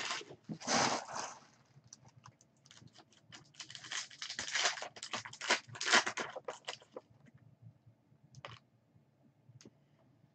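Trading cards being handled and flipped through, a run of short papery slides and flicks of card stock against card stock. It is busiest from about three to seven seconds in, with a few isolated flicks after.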